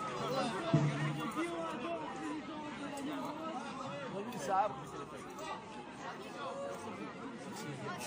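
Overlapping chatter of several people talking at once in the street, with no single voice clear.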